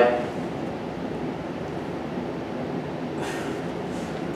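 Steady background hiss and hum of the room, with a short breath about three seconds in.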